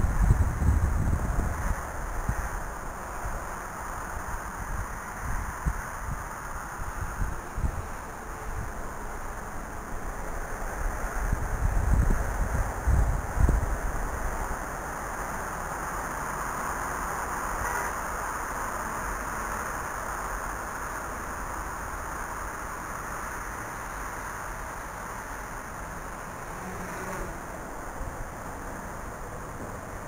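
Wind buffeting the microphone in gusts, strongest in the first two seconds and again around twelve to fourteen seconds in, over a steady outdoor hiss.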